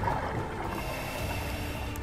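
A steady rushing wash like moving water, with faint held tones from the video's background music.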